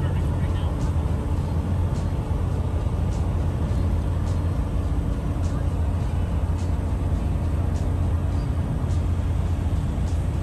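Motorhome driving at highway speed, heard from inside the cab: a steady low engine and road drone, with faint clicks about once a second.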